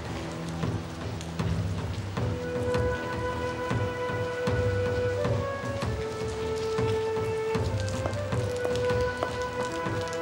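Steady rain falling, under background score music whose long held notes come in about two seconds in over a low pulsing bass.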